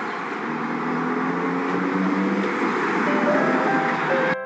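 Road noise inside a moving car on a rain-wet highway: a steady rush of tyres on wet tarmac with a low engine drone underneath, and a faint rising tone near the end.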